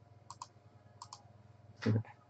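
Light clicking at a computer, in quick pairs about a third of a second in and again about a second in. A short louder sound comes just before the end.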